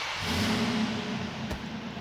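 The 2006 Dodge Charger R/T's 5.7-liter Hemi V8 starting, heard from inside the cabin: it catches with a surge that fades as it settles into a steady fast idle.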